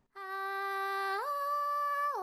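A woman humming a held, wordless note that starts after a brief pause and steps up to a higher pitch a little past the middle.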